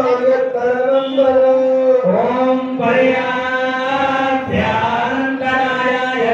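Devotional chanting of puja mantras: a voice holding long steady notes with short sliding turns between phrases.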